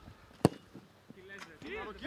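A single sharp thud of a football struck hard by a boot, about half a second in. Faint calling voices follow near the end.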